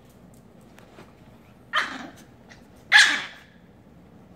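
Small dog barking twice, two sharp barks a little over a second apart, the second louder.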